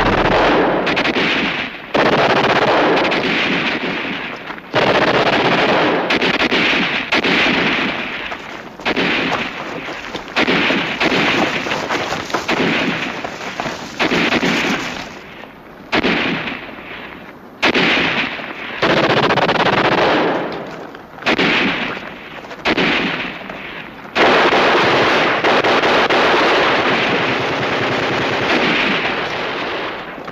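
Machine-gun fire in repeated bursts, each starting suddenly and lasting one to several seconds, with short breaks between them; the longest burst comes near the end.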